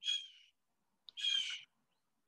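A bird calling twice, two short high calls about a second apart.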